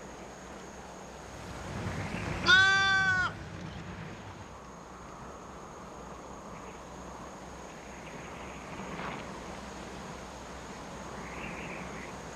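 A single bleat, under a second long, from a goat or sheep, a little over two seconds in. It sits over a quiet, steady background.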